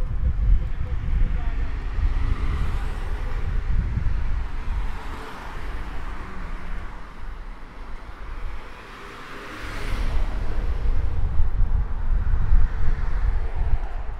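Street traffic: vehicles pass on the road, their tyre and engine noise swelling and fading twice, over an uneven low rumble of wind buffeting the microphone.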